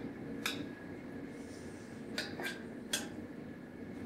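Metal kitchen tongs clicking against a ceramic baking dish while chicken pieces are turned over in their pan juices: about four light, separate clicks.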